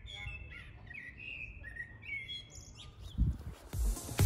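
A songbird singing a string of short whistled and chirping notes over a low background rumble. About three seconds in, electronic dance music with a heavy beat starts.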